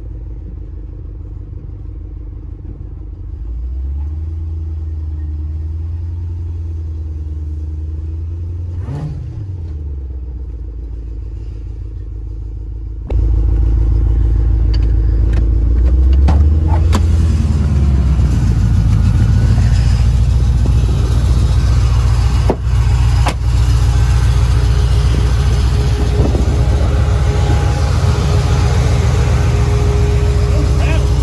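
Supercharged V8 of a Chevy C10 short bed: a steady low rumble heard inside the cab while cruising, then after about 13 seconds much louder and fuller as the engine runs with the door open, with a few sharp clicks.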